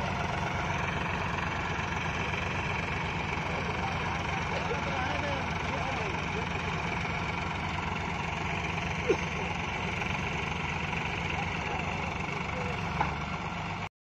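Farm tractor diesel engines running steadily under load, a Sonalika tractor towing a second tractor and its loaded trailer. There is a short sharp knock about nine seconds in and another near the end.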